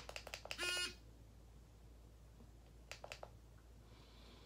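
A few quick clicks from the e-rig's button, then a short buzzing tone of about a third of a second just before the one-second mark. About three seconds in, a second run of four or so clicks follows, the device being worked to start its heat cycle.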